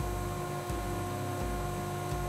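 SawStop contractor table saw running without cutting: a steady motor hum with a constant whine.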